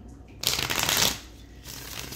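A deck of cards shuffled by hand: a rapid flutter of cards for about a second, starting about half a second in, then a shorter flutter near the end.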